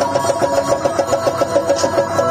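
Live dance-accompaniment music, led by a clarinet playing quick, evenly repeated notes at about four to the second.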